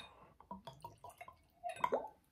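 Rum poured from a bottle into a Glencairn glass: a quiet run of short splashes and drips, busiest near the end.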